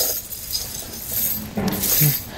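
Steel snow tire chain links jingling and clinking, with scraping, as the chain and its cable are slid across the floor behind the tire.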